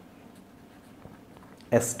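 Faint scratching of a felt-tip marker writing on paper.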